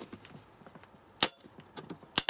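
The plastic bottom cover of a rice cooker being pried at its seam with a metal rod: faint creaks and ticks, then one sharp plastic snap about a second in.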